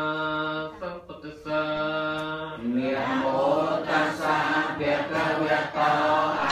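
Buddhist chanting by a group of voices, held on long near-monotone pitches with a short break about a second in. About halfway through it grows fuller and louder as the voices overlap.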